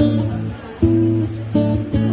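Acoustic guitar strummed, a few chords each left ringing, with a new strum about a second in and another shortly after.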